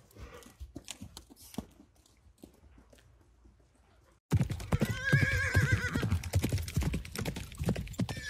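Faint soft hoofbeats of a horse walking on arena sand. About four seconds in, loud horse clip-clop hoofbeats start suddenly, with a horse whinnying in a wavering call about a second later.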